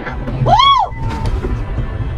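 Steady low road and engine rumble inside a moving car on a highway. About half a second in, a brief high-pitched sound rises and falls in pitch.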